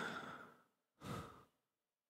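Two soft, breathy exhalations from a person, one at the start and another about a second in, like sighs or breathy chuckles, then silence.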